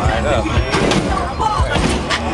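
Hydraulic lowrider hopping, its front end coming down on the asphalt with several sharp thuds, over crowd chatter and music.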